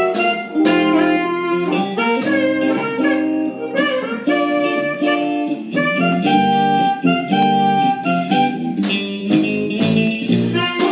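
Live funky blues-jazz instrumental: electric guitar, keyboard and drums, with a reed instrument carrying the melody in long held notes over a steady beat.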